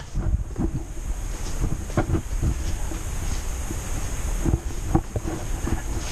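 Rumbling noise on the camera microphone with scattered knocks and bumps, as the camera is moved about.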